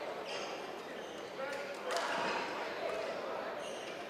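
Murmur of spectator voices in a large, echoing sports hall, with a few short sneaker squeaks on the court mat as badminton players set up for the serve; the voices swell briefly about two seconds in.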